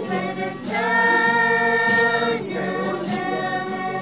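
A group of children singing together in unison, holding one long note about a second in, over a steady low drone, with a sharp beat coming about once a second.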